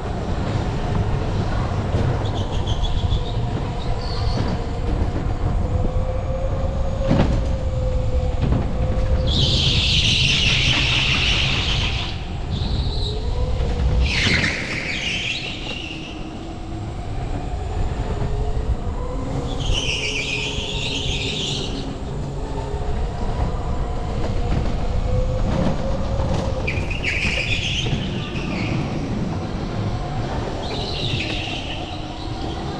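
Onboard sound of an electric go-kart driven hard: the electric motor whines, its pitch rising and falling with speed, over a steady rumble from the tyres and chassis. The tyres squeal four times on the smooth concrete as the kart slides through corners.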